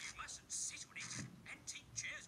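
Cartoon character dialogue played back through a small device speaker and picked up secondhand, thin and breathy with almost no low end.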